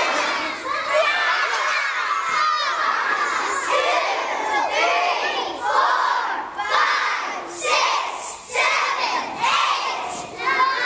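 A large group of young children shouting together, many voices at once with no pause, coming in short waves in the second half.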